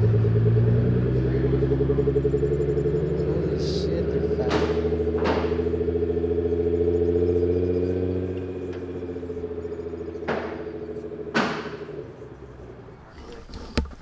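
A Nissan GT-R's twin-turbo V6 running at low speed as the car pulls away. Its steady engine note fades out over the last few seconds as it drives off, with a few short sharp clicks along the way.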